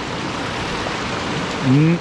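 River rapids rushing, a steady hiss of moving water. A man's voice starts near the end.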